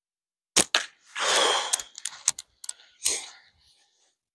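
A slingshot with flat latex bands is shot: a sharp snap of the bands on release, with a second crack right after it as the ammo strikes the target. Small clicks and a further sharp knock follow as the pouch is handled and the next shot is loaded.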